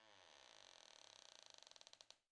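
Near silence: only a very faint electronic residue between lines of narration.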